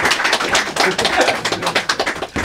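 A small audience applauding: dense, irregular clapping in a small room.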